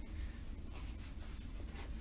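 A pause in a talk: low steady hum of the room and recording, with two faint, brief rustles about a second apart.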